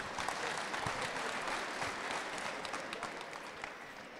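A large crowd applauding, a dense patter of many hands clapping that slowly dies away near the end.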